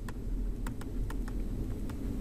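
Stylus tapping and scraping on a tablet screen while handwriting: a run of light, irregular ticks over a low steady hum.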